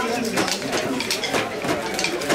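Wooden kente narrow-strip handloom being worked: repeated sharp knocks and clacks, several a second, from the beater and heddle frame, with voices in the background.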